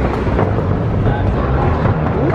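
Escalator running, a steady low rumble from its moving steps and drive, with faint voices mixed in.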